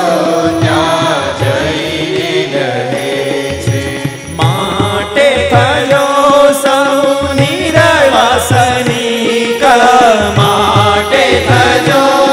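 Devotional kirtan: singing a chant-like melody, accompanied by violin, keyboard and tabla playing a steady beat.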